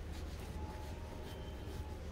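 Steady rain in the background over a low, constant hum, with a few faint scrapes.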